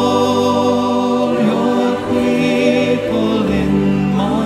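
Choral music: voices singing long held notes over a steady accompaniment, the chords changing every second or two.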